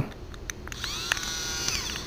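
Graseby electronic syringe driver switched on with its Start/Test button: a couple of button clicks, then its small drive motor whirring with a high whine for just over a second as it runs.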